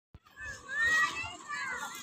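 Young children's high-pitched, wordless shouts and squeals while playing, loudest about a second in.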